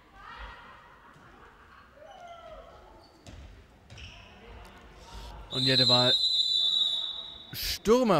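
Ball bounces and distant players' voices echo in a sports hall, then a referee's whistle blows long and steady about five and a half seconds in, signalling a foul.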